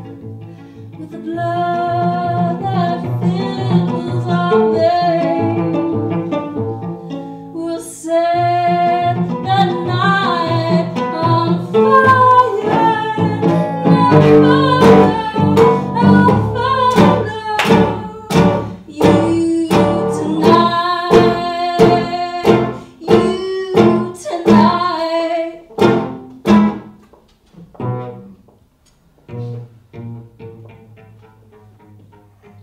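Cello and acoustic guitar playing a slow melody with long bowed notes. From about halfway in, sharp repeated guitar strums join in, then thin out and die away near the end.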